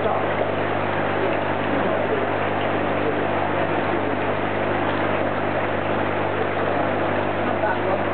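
Steady rush of water over a constant low hum from a koi tank's pump and filtration equipment.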